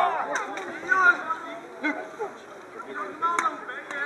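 Voices calling out across an open football pitch, not clear enough to be transcribed, with three sharp knocks, the loudest about three and a half seconds in.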